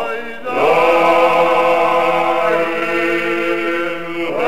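Georgian traditional polyphonic choir of men's voices singing a mravalzhamieri (long-life song) unaccompanied, the upper voices over a held low drone. There is a short break in the sound just after the start, then the voices rise back in and hold a long sustained chord.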